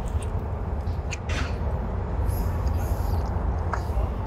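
A person chewing a mouthful of soft cream-filled doughnut, with a few short mouth clicks about a second in and near the end, over a steady low background rumble.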